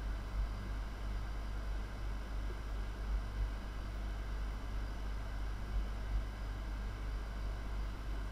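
Steady background hiss with a low hum underneath, the room and microphone noise of a voice-over recording with no speech.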